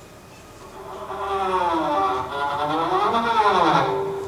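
Electric guitar played through effects pedals: several sustained tones swell in from about a second in, grow louder, and slide up in pitch and back down near the end.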